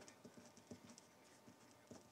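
Near silence: room tone with faint, scattered small ticks.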